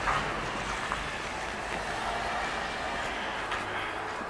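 Steady outdoor background noise, with a short sharp sound at the very start and a faint click about a second in.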